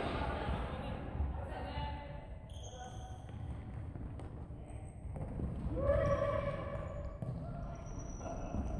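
Indoor futsal play in a large gymnasium: players' shouts, one clear call about six seconds in, with the ball being kicked and brief high shoe squeaks on the wooden court, all echoing in the hall.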